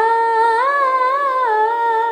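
A woman's voice singing one long wordless note that waves up and down in the middle and steps down near the end, over a steady drone.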